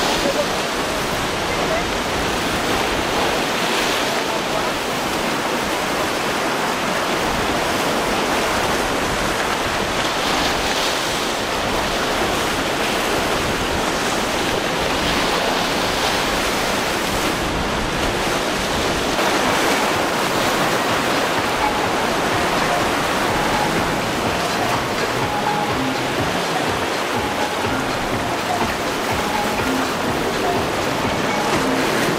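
Steady rush of ocean surf breaking in an inlet, an even wash of water noise with no single loud impact.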